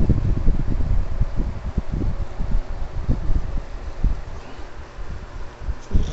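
Handling noise on a hand-held Nintendo 3DS XL's built-in microphone: an irregular low rumbling with soft knocks as the device is moved and cards are shuffled in the hand.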